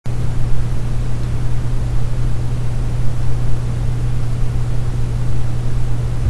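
A steady low hum with a constant hiss of background noise, unchanging throughout, and no other sound.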